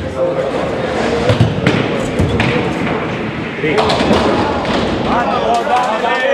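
Voices talking across a large bowling hall, with a couple of heavy thuds, typical of nine-pin bowling balls landing and rolling on the lanes, about one and a half and two seconds in.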